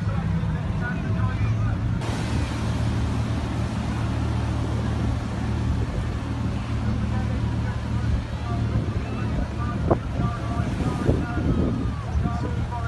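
Outboard engines of an RNLI Atlantic 85 inshore lifeboat running as it pulls away through the water: a steady low hum, with a louder rushing hiss that sets in suddenly about two seconds in. Faint crowd voices are heard in the background.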